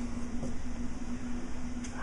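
A steady background hum, one constant low tone over a faint rumble and hiss, with no distinct sound rising above it.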